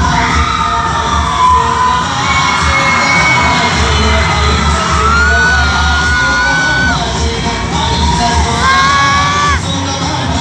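Loud stage dance music played through a hall's speakers, with the audience cheering and shouting over it. Long, high-pitched calls stand out around the middle, and a few shorter ones near the end.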